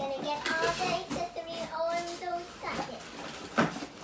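A young girl's voice without clear words, some notes held in a sing-song way, over cardboard rustling as a box lid is handled. A sharp knock about three and a half seconds in is the loudest sound.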